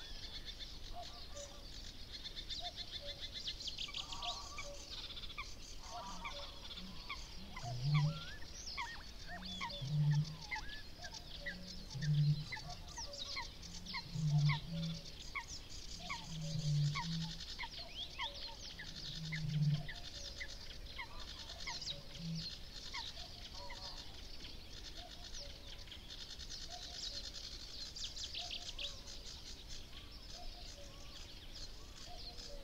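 Great bittern booming: a series of about seven low booms, roughly two seconds apart, through the middle of the stretch. Behind it a dawn chorus of small songbirds chirps and trills continuously.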